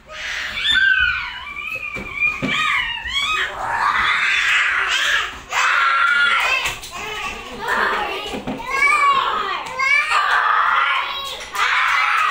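Young children squealing and shrieking in high, sliding voices, over and over, with no clear words.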